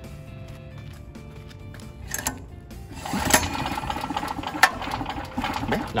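A 5000-watt portable gasoline generator's small engine starting about three seconds in, then running steadily.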